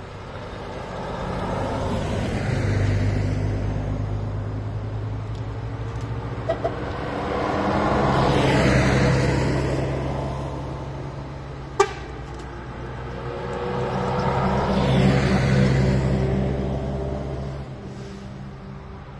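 Karosa 700-series buses driving past one after another: three pass-bys that swell and fade, each with the diesel engine running under tyre noise. Two brief horn toots come about six and a half seconds in, and a sharp click comes near twelve seconds.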